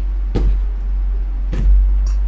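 Two stacks of round cardboard tea leaf fortune cards set down on a wooden table after the deck is cut: two soft knocks a little over a second apart, over a steady low hum.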